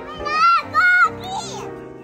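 A toddler's two short, high-pitched squeals in the first second, over cheerful background music.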